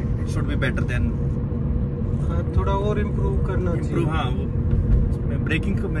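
Steady low road and engine rumble inside the cabin of a Maruti Suzuki Ciaz diesel sedan driving at speed, under men talking.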